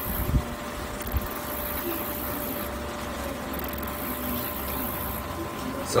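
Steady low background hum with a faint steady tone running through it, and two soft knocks in the first second or so.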